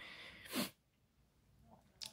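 A man's short, sharp breath or sniff about half a second in, between sentences, followed by near silence.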